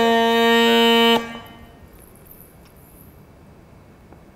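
Mashak, the Rajasthani bagpipe, sounding one steady held reed note that cuts off abruptly about a second in.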